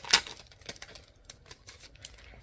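Packaging around a booklet being handled and opened: a sharp crackle just after the start, then a run of small, irregular clicks and crinkles.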